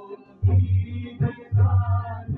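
Traditional Ismaili devotional song (ginan) performed live: large frame drums (daf) beat a steady rhythm of deep strokes under a plucked long-necked lute, with a male voice singing from a little over a second in.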